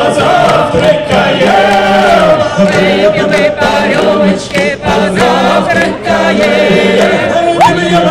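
A choir and a male lead singer performing a Cossack song live with band accompaniment, loud and continuous.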